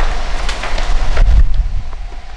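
Wind buffeting the camera microphone, a loud low rumble that peaks about halfway through, with a few footfalls from people running.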